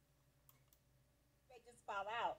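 Near silence with two faint clicks about half a second in. Near the end a person's voice starts, rising and falling sharply in pitch.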